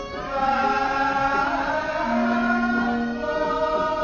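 Javanese court gamelan music for a Bedhaya/Srimpi dance, with a chorus of voices singing long held notes over the ensemble. It swells about half a second in.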